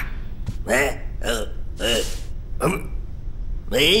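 A cartoon character's wordless vocal sounds: a string of short pitched grunts and hums about every half second, a breathy puff in the middle, then a longer wavering "eh, eh" starting near the end.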